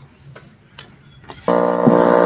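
Quiet room tone with a few faint clicks, then about one and a half seconds in, a loud, held vocal sound in a steady pitch starts abruptly: a panelist's drawn-out hesitation sound as he begins to speak.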